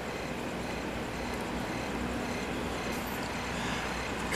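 Steady, even background noise, like distant traffic ambience, with faint steady tones underneath.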